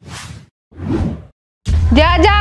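Two quick whoosh sound effects, one right after the other, each about half a second long, of the kind laid over an edit as a scene transition. A woman's voice begins just before the end.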